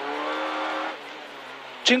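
Renault Clio N3 rally car's engine heard from inside the cabin, running hard under throttle over road noise. About halfway through, the driver lifts off and the engine sound drops away sharply, as the car slows for a tight left hairpin.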